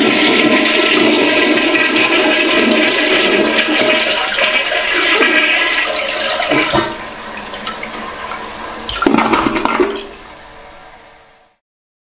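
A loud rush of water that eases off after about seven seconds, swells again briefly near nine seconds, then fades away.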